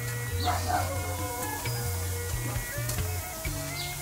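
Background music with a steady bass line that changes note every second or so, and sustained notes above it.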